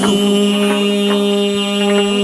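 Chầu văn ritual music: one long steady note is held throughout, with a few light percussion ticks over it.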